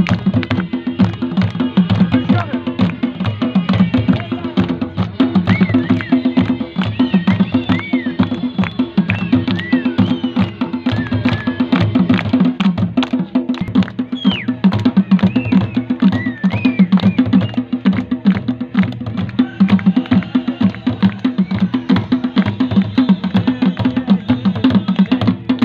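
Double-headed barrel drum played fast and continuously in a steady dance rhythm. Several short, high rising-and-falling whistles sound over the drumming in the middle.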